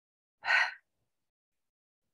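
A woman's single short, sharp intake of breath, about half a second in.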